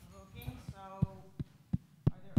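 A few muffled words, then a run of dull thumps, about three a second, five in all, the loudest near the end.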